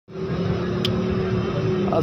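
A steady mechanical hum, like a motor or engine running, with a faint steady tone over it and one short click about a second in.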